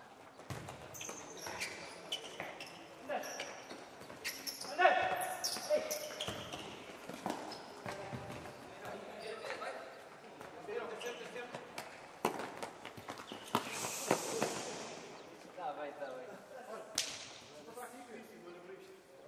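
Futsal players shouting and calling to each other on an indoor court, mixed with the short knocks of the ball being kicked and bouncing on the hard floor. The loudest shout comes about five seconds in.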